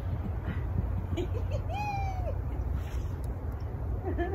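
Wind rumbling on the microphone, with one short hoot-like call that rises, holds and falls about a second and a half in.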